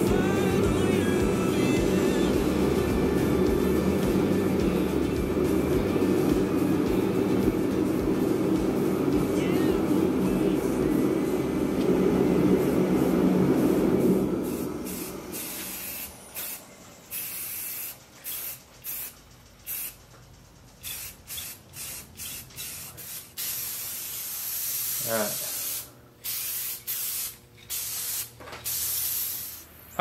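A background pop song plays for roughly the first half, then fades out. After that an aerosol spray-paint can hisses in many short on-off bursts, with a few longer sprays near the end.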